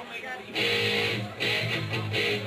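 Amplified electric guitar striking loud chords, two of them, the first about half a second in and the next about a second later, over crowd chatter.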